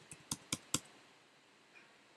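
A short run of sharp keystrokes on a computer keyboard, about four quick clicks in the first second, then a faint single tap near the end.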